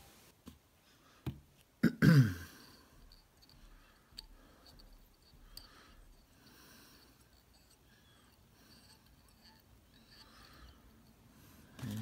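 A person clears their throat once, about two seconds in, just after a few small clicks; the rest is faint handling noise.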